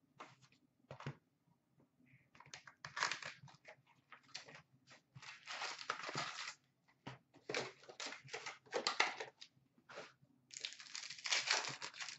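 Hockey card box and its foil packs being torn open and crumpled by hand: irregular bursts of tearing and crinkling wrapper, with a long burst near the end.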